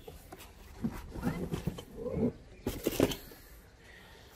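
Cardboard box and foam packaging being handled and shifted on the floor: irregular rustling and scraping, then a few sharp knocks about three seconds in.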